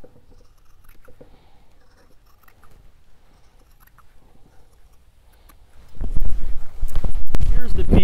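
Scissors cutting through soft leather hide, faint quiet snipping. About six seconds in, a loud low rumble takes over.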